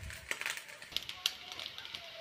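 Faint, irregular crackling and ticking of vegetables frying in oil in a frying pan.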